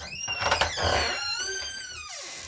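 A door being opened, with a long squeak that slowly falls in pitch.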